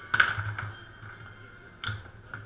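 Foosball table in play: a sharp clack of the hard ball struck by a player figure and knocking around the table just after the start, followed by a few smaller clicks, then another single sharp knock near the end.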